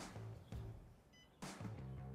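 Quiet background music with a steady beat and low bass notes, a strong hit landing about every second and a half.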